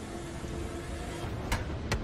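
TV fight-scene soundtrack: a low steady hum with a faint held tone, then two sharp knocks about half a second apart near the end.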